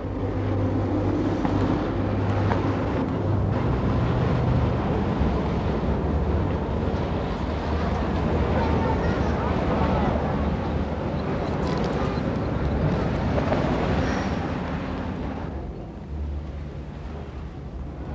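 Street ambience: a steady wash of traffic noise with indistinct voices, easing off slightly near the end.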